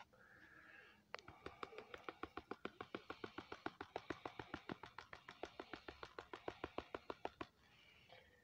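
Quick, even tapping on the side of a gold pan, about seven or eight taps a second, starting about a second in and stopping shortly before the end. This is the tap method, used to settle gold to the bottom of the pan.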